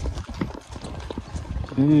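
Light, irregular clicks and knocks over a low rumble, in a pause between a man's sentences.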